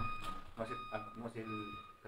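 Faint, low speech in a small meeting room during a lull between speakers, with a thin, steady high electronic tone running underneath.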